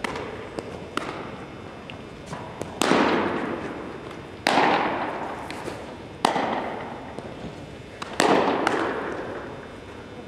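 Baseballs popping into catchers' mitts: four loud sharp cracks about one and a half to two seconds apart, with fainter pops between, each ringing out in a long echo around a big gymnasium.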